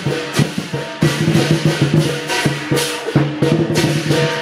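Chinese lion dance percussion: a large drum beaten in a fast, dense rhythm, with cymbals crashing several times.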